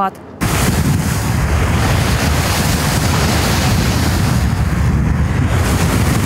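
Loud, steady rushing noise with a heavy low rumble, starting abruptly about half a second in. It is wind buffeting the microphone and water rushing as the camera moves along a flooded road.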